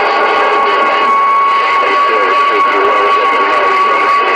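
CB radio receiving a busy channel: garbled, overlapping voices buried in hiss, with a steady whistle running through, the sound of several stations keying up at once and their carriers beating together.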